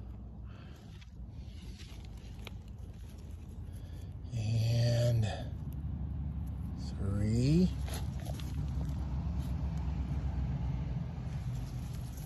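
Fingers scraping and brushing through loose soil and wood-chip mulch, uncovering buried tortoise eggs by hand. A man's drawn-out voice is heard twice, once near the middle and again a couple of seconds later, over a steady low hum.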